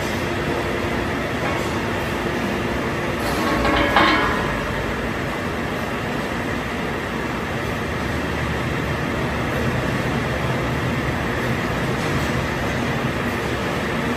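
Seydelmann K604 vacuum bowl cutter raising its hydraulic cover: a steady mechanical hum, with a brief louder swell about four seconds in.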